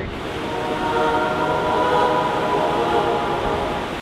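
A held, chord-like music swell that fades in about half a second in and fades out near the end, over a steady rushing noise.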